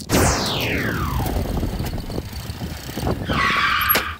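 Edited-in sound effect: a sudden loud whoosh that falls steeply in pitch over about a second, over a low rumble, then a short hiss near the end.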